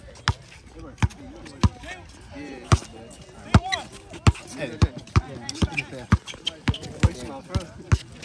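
Basketball bouncing on an outdoor concrete court: sharp, separate bounces, about one a second at first and quicker, about two a second, in the second half. Voices chatter in the background.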